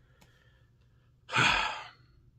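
A man's single sigh: one breathy exhale of about half a second, coming after a second of near quiet.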